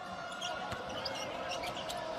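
A basketball dribbled on a hardwood court, a run of short bounces over the steady background noise of an arena crowd.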